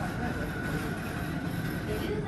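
Aquarium viewing-hall ambience: a steady low rumble with a faint steady high tone and indistinct voices in the background.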